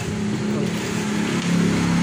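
Steady low mechanical drone with a noisy hiss over it, growing slightly louder about one and a half seconds in, like a running vehicle engine.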